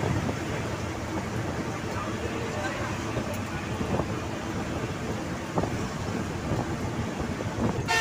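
Steady engine and road noise inside a moving vehicle's cabin at highway speed.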